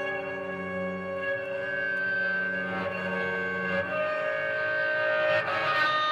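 Guitar strings bowed with a cello bow and run through effects pedals: a sustained drone of several held pitches at once, turning grainier and noisier near the end.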